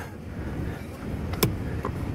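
Low steady rumble with one sharp click about one and a half seconds in and a fainter click shortly after.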